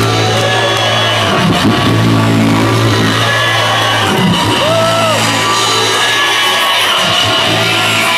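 Live electronic music built by a beatboxer from his own voice with looping gear, played loud over a PA. A held low bass note with a buzzy edge drops out briefly about every two and a half seconds, and short gliding tones sound above it.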